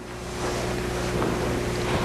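Steady hiss with a low electrical hum from a meeting room's microphone and recording system, swelling back up in level about half a second in; no voice.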